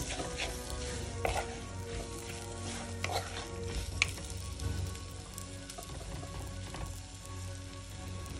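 Squid curry sizzling in a pot on the stove as it is stirred, with a few sharp clicks of the stirring utensil against the pot.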